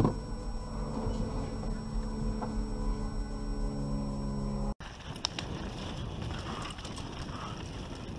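A vehicle engine idling steadily, with a brief loud knock right at the start. About five seconds in it cuts abruptly to a steady rushing of wind and tyre noise from a mountain bike riding down a dirt trail.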